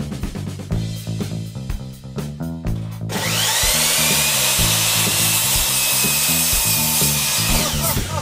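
An electric miter saw's motor runs for about four and a half seconds: it starts about three seconds in with a whine that quickly rises and then holds steady, then cuts off sharply near the end. Background music plays throughout.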